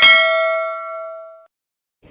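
Notification-bell sound effect: a single bright ding that rings and fades out within about a second and a half.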